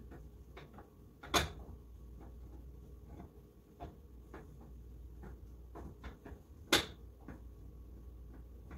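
Wooden spoon stirring a thick chocolate mixture in a metal pot, scraping and knocking against the pot with scattered light clicks, two louder knocks about a second and a half in and near the end.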